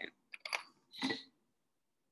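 Handling of a drink bottle as it is picked up for a sip: a couple of quick clicks about half a second in, then a short rustling sound about a second in.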